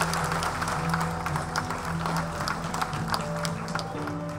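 An audience applauding, many hands clapping together, over steady background music.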